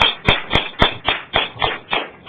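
One person clapping slowly and evenly, about four claps a second, her hands partly holding sheets of paper.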